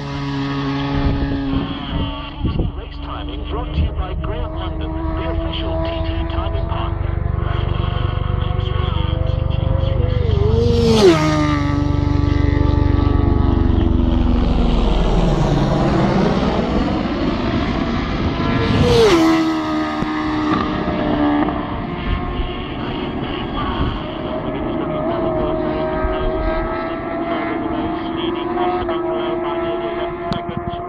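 Superstock race motorcycles at full speed, passing one after another: each engine note climbs as the bike nears and drops sharply in pitch as it goes by, right at the start, about 11 seconds in and again about 19 seconds in. Between passes, other bikes are heard running steadily in the distance.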